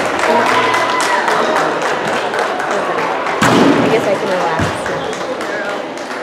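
Crowd chatter and faint music echoing through a large gymnasium, with a heavy thud about three and a half seconds in and a shorter knock about a second later.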